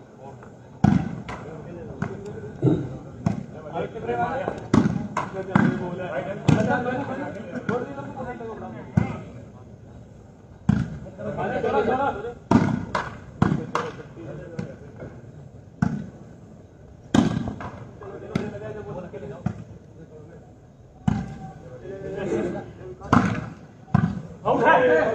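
A volleyball being struck by hand over and over during rallies: many sharp smacks at irregular intervals, some in quick runs, over voices of players and onlookers calling out.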